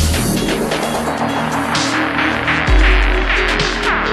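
Electronic dance music: a deep bass note drops out just after the start and comes back loud about two and a half seconds in, under dense noisy upper layers, with falling pitch sweeps near the end.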